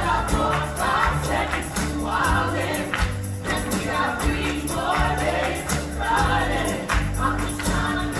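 A live musical-theatre number: several voices singing together over a band with a steady bass and beat.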